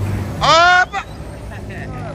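A vehicle horn sounds one short, loud honk about half a second in, its pitch sliding up as it starts and then holding, over the low steady running of a passing bus.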